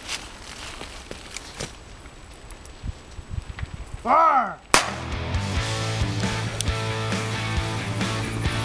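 Brush rustling faintly underfoot, then a handheld flare launcher fired overhead: a shrill whistle that rises and falls for about half a second, ending in a sharp crack. Music starts right after.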